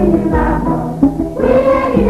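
Music by a Guinean instrumental ensemble: voices singing over pitched instruments, with held notes and gliding vocal lines.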